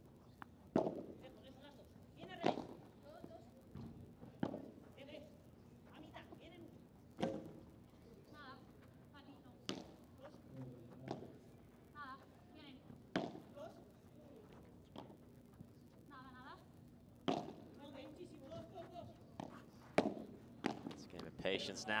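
Padel rally: the ball is struck back and forth with solid padel rackets and bounces off court and glass, sharp pops every two to three seconds. Faint voices sound between the shots.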